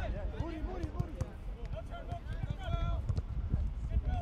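Distant, unclear shouts of players and coaches on an outdoor soccer pitch over a steady low rumble, with scattered dull thuds of the ball being played.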